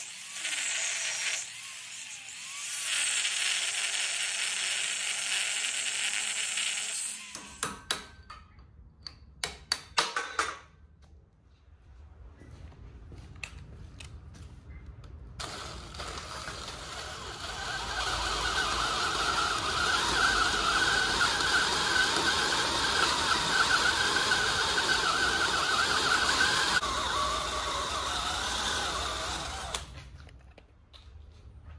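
Angle grinder grinding steel on an excavator thumb pin's retaining cap for the first seven seconds or so, followed by a few sharp knocks. Then, from about fifteen seconds in, a cordless drill runs steadily, boring out the pin's half-inch bolt hole so it can be tapped for a five-eighths bolt.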